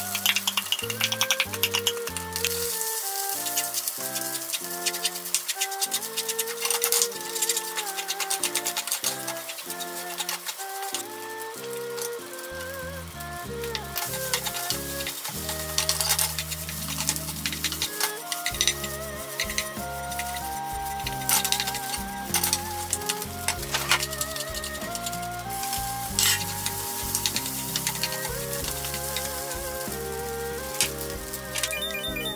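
Egg fried rice sizzling in a frying pan as it is stir-fried, with a wooden spatula knocking and scraping against the pan many times. Light background music plays over it.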